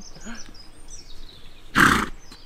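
A Shetland pony gives one loud snort near the end as it heaves itself up from lying in the sand. Faint birdsong is heard before it.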